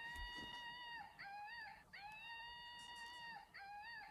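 Monkey hand puppet toy playing its built-in sound: a high, steady note held for over a second, then a short note that bends upward. The pair plays twice.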